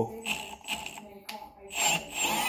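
Milwaukee M18 FPD2 Gen3 brushless combi drill stalling as it tries to drive an M12 spiral-flute machine tap into 12 mm steel plate. The motor stutters in short clicks about twice a second, with a louder burst near the end. The drill cannot turn the tap even a full rotation.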